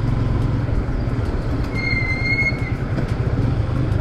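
Motorcycle engine running steadily under road and wind noise while riding. About two seconds in, a high, steady squeal sounds for about a second.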